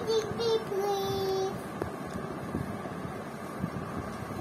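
A young child's high voice in a short sing-song phrase of long held notes, ending about a second and a half in, followed by low room noise.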